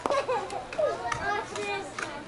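A slowpitch softball bat striking the ball with a single sharp crack right at the start. Excited, high-pitched shouting and calling from players and spectators follows.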